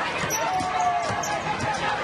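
Basketball dribbled on a hardwood court amid arena crowd noise, with a voice calling out in one held note about half a second in.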